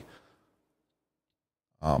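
Near silence in a pause of a man's talk: speech trails off at the start, and a spoken 'um' begins near the end.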